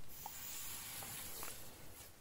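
Faint steady hiss of two short lengths of test fuse burning after being lit by Talon clip-on consumer igniters, stopping just before the end. Both igniters fired.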